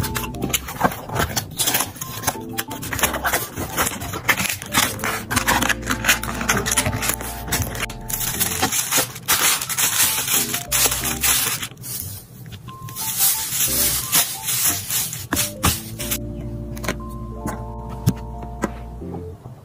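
Crisp scraping, crinkling and rustling of a cardboard mailer box being handled and folded and of tissue paper being laid into it, with many short sharp clicks. A light melody of background music plays underneath throughout.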